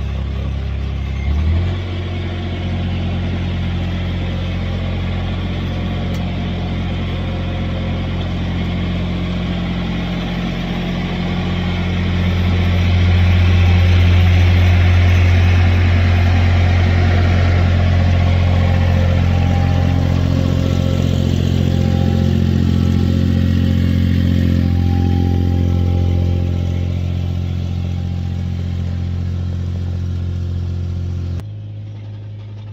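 Vermeer mini-skidsteer engine running steadily, revving up slightly about a second and a half in. It grows louder as the tracked machine drives up close, loudest in the middle, then eases off as it moves away.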